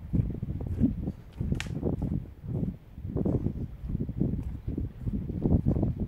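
Footsteps on a muddy track, a dull thud about twice a second, with jacket fabric rubbing over a phone microphone carried in a chest pocket. One sharp click comes about one and a half seconds in.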